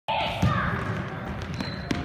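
Basketballs bouncing on a hardwood gym floor, with a couple of sharper bounces standing out, under the voices of people in the hall.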